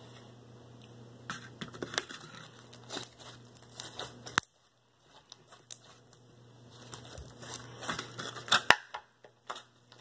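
Blue fishbowl slime being stretched and squished by hand, giving irregular wet clicks, pops and crackles, with a sharper snap about four seconds in and a cluster of louder clicks near the end.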